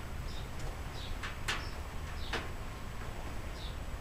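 Handling noise on a workbench as a computer case and an air blow gun are picked up and set down: two short, sharp knocks about a second and a half and two and a half seconds in, over a low steady rumble.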